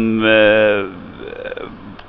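A man's voice drawing out one long hesitation sound mid-sentence, followed by a short, quieter murmur.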